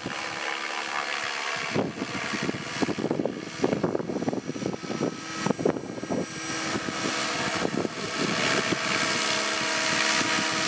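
Electric SAB Goblin 500 RC helicopter in flight, its main rotor whirring over a steady motor hum. It grows louder in the second half as it flies nearer.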